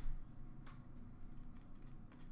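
Trading cards handled in the hands: faint rustling and a few light clicks as a freshly opened pack is sorted, with a low bump at the very start.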